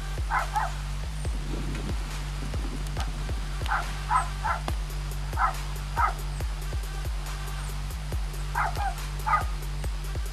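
Background music with a steady beat and a deep bass. Over it a dog barks in short pairs several times.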